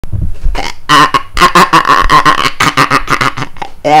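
A man laughing loudly in quick, repeated bursts, about four or five a second.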